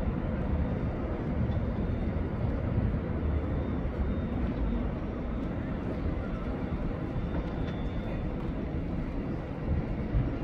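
Steady outdoor city background noise with a low traffic rumble.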